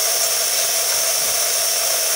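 Faucet running steadily: an even hiss of tap water, most likely while hands are washed with frozen dish soap.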